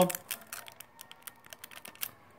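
Light, irregular clicking and tapping of fingertips and fingernails on the plastic membrane switch of an incubator's front panel, as the keypad overlay is picked at and pried off.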